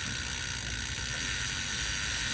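Bicycle rear freehub pawls ticking steadily as the crank is turned backwards, the chain running over the cassette and through the rear derailleur while chain lube is applied.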